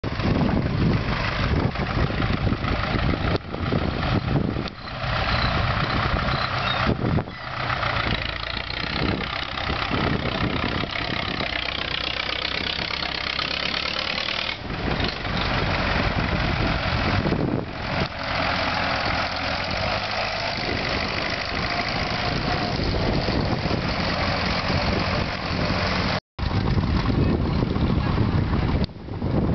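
Vintage farm tractor engine running as the tractor drives past on a dirt track, its pitch bending as it goes by midway. The sound cuts out completely for a moment near the end.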